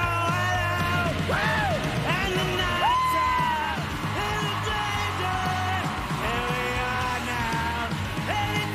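Rock song sung live: a gritty lead vocal with gliding notes over a band backing with a steady beat.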